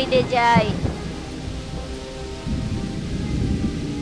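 Rainstorm sound effect: steady heavy rain with rolling thunder, the low rumble growing louder about two and a half seconds in.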